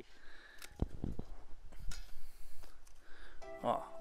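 Hand pruning shears snipping through a dormant grapevine cane: one sharp click about a second in, followed by a few lighter clicks from the blades.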